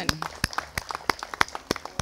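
Applause: sharp hand claps about three a second, with lighter scattered claps among them.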